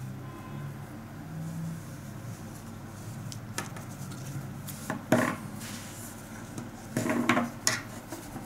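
Crocheted cotton shawl being handled and spread out on a wooden table: soft rustling with a few light knocks, the loudest about five seconds in and again around seven seconds.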